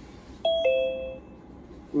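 Zoom's two-note falling chime, signalling that a new participant has joined the meeting.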